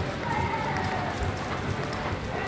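Hoofbeats of a horse loping on the soft sand footing of an arena, with a voice faintly heard behind them.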